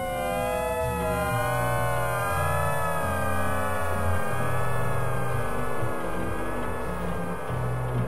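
Experimental electronic synthesizer music: several wavering tones glide slowly up and down over low drone notes that change in steps, the gliding tones fading out about halfway through.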